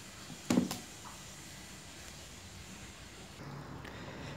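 A large pot of water at a rolling boil on a stove, giving a faint, steady hiss of bubbling, with one short, louder sound about half a second in.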